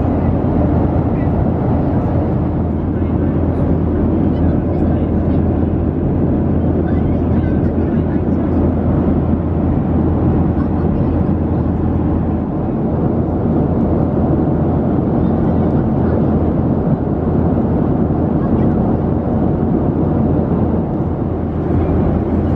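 Steady cabin noise inside a Boeing 737-700 airliner: a constant loud roar with a low hum underneath, with passengers' voices murmuring in it.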